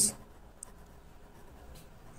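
Pen writing on paper, a faint scratching as words are written out by hand, with a small tap about half a second in.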